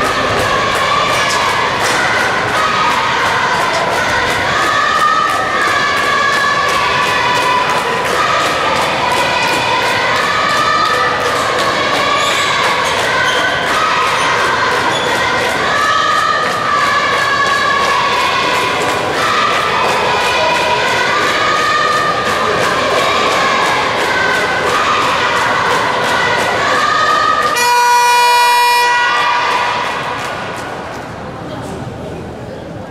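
Spectators singing a repeated cheer song in unison over a steady beat. Near the end a long electronic buzzer sounds for about a second and a half, the signal that ends the timeout.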